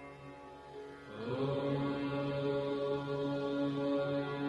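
Devotional mantra chanting over a steady drone; about a second in, a new note glides up and is held, and the sound swells louder.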